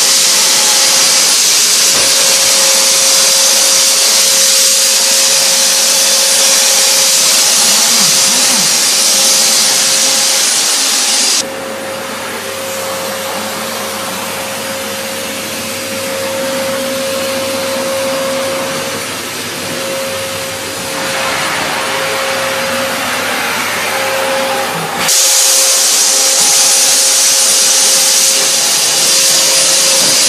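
Enrich Fogger C150 PLUS electric fine-mist fogger running: the steady rush of its blower motor with a constant whine. About eleven seconds in the sound suddenly turns quieter and duller, and some fourteen seconds later it jumps back to full.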